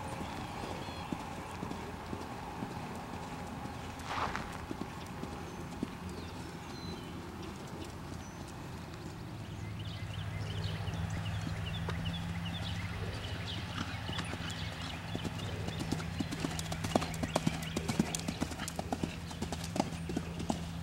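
Horse's hoofbeats cantering on sand arena footing, faint at first and growing louder and quicker in the last few seconds as the horse comes close and jumps a fence.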